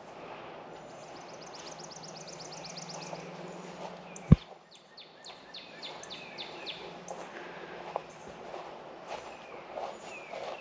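Birds singing: a rapid high trill, then a series of short falling whistled notes. A steady low hum underneath stops about four seconds in with a single sharp click.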